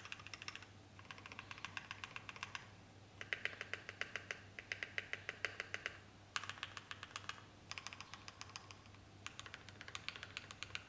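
Fast typing on a 60% mechanical keyboard with lubed JWICK Black linear switches fitted with 0.15 mm switch films. The keystrokes come in several quick runs separated by short pauses.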